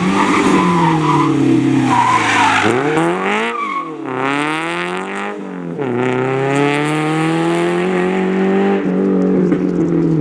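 Renault Clio Sport rally car's four-cylinder engine. Its revs fall as the car brakes into a turn with the tyres squealing. Then it revs up sharply, shifting up twice with quick drops in pitch, and pulls hard away, easing off near the end.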